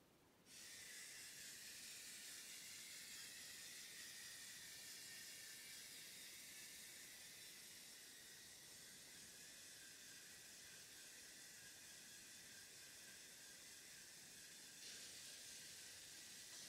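Near silence: a faint steady hiss that starts suddenly about half a second in and steps up slightly near the end.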